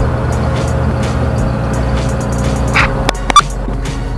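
Background music over a Chery QQ's engine idling, heard from inside the cabin, with a few sharp clicks about three seconds in.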